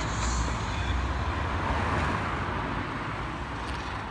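Road traffic noise: a steady rumble and hiss of passing vehicles, with the deep rumble easing off in the second half.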